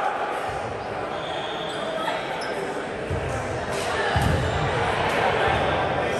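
Low thuds of a ball bouncing on a gym's hardwood floor, several about a second apart in the second half, against indistinct voices echoing in a large hall.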